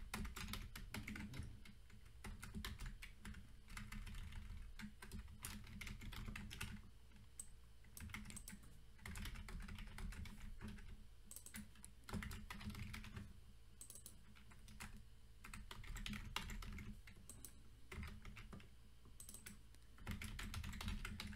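Computer keyboard being typed on in quick runs of key clicks broken by short pauses, fairly quiet.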